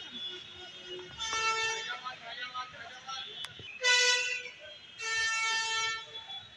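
Vehicle horns honking: three flat-pitched blasts. The middle one is short and the loudest, and the last is held for about a second.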